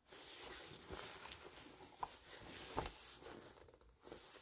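Faint rustling and creasing of a soft vegan leather clutch being squeezed and smoothed by hand, with a couple of small clicks about two and three seconds in.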